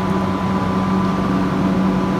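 Steady machine hum: a low drone with a fainter, higher tone above it, unchanging.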